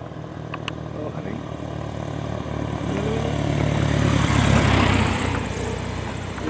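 Light single-engine propeller airplane coming in low over the runway to land, its engine and propeller growing louder to a peak about four to five seconds in, then fading.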